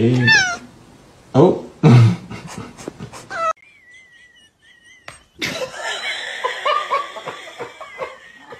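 Loud bursts of a person's laughter, then after an abrupt cut a cat meowing in long, wavering cries over the second half.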